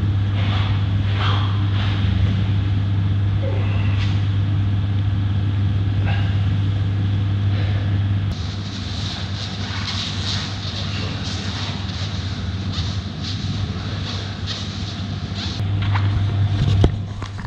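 A steady low mechanical hum that drops a little in level about halfway through.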